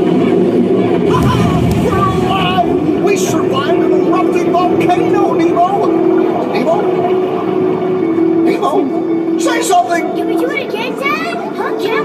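Indistinct voices in a ride submarine's cabin over a steady low hum. The low end is heavier in the first couple of seconds.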